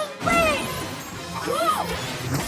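Cartoon action soundtrack: music with a crashing impact sound effect about a quarter second in, and short pitched glides that bend up and down.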